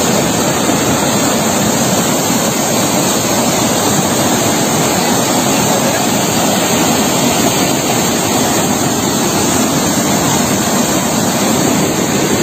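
Water from a rain-swollen tank spilling over a stone check-dam weir and rushing down the spillway, a steady unbroken rush.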